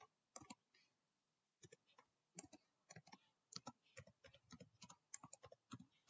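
Faint computer keyboard typing: a couple of keystrokes, a pause of about a second, then a steady run of keystrokes.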